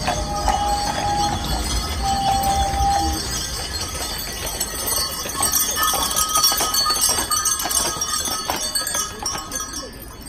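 Metal fittings on draft-horse parade harness jingling and clinking as the horses walk, with hooves knocking on the road. Two short held tones sound near the start.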